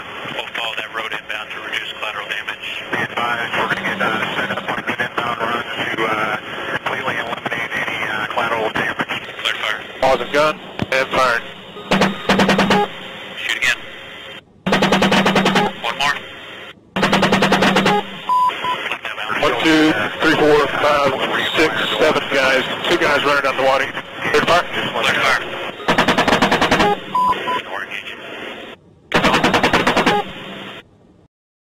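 An AH-64 Apache's M230 30 mm cannon firing several short bursts, about half a dozen spread over the second half, heard through thin, radio-quality cockpit audio.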